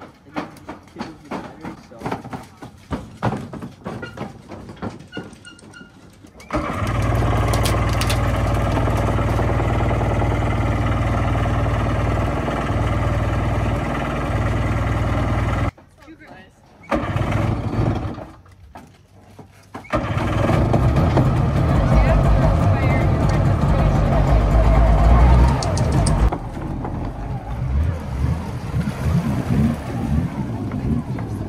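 Stand-up jet ski engine, which the owner says tends to flood, starting and running. It catches about six seconds in and runs steadily for about nine seconds; a caption calls it "sounds nice". After a short break it runs again from about twenty seconds in, louder and uneven, then drops lower near the end as the craft pulls away.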